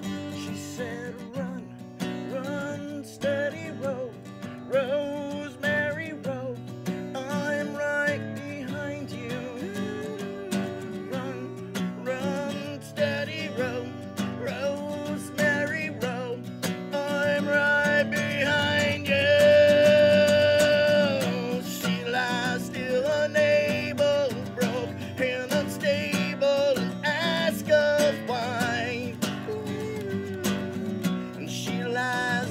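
Two acoustic guitars playing a song together, with a long held note about two-thirds of the way through.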